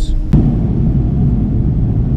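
Airliner cabin noise in flight: a loud, steady low rumble. It cuts in sharply about a third of a second in.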